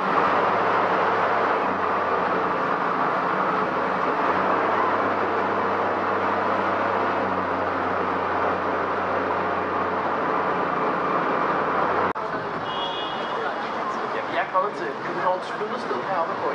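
Tour boat's engine running at a steady low hum under a constant rush of water and wind noise. It cuts off abruptly about three-quarters of the way in, followed by a brief high tone and faint voices.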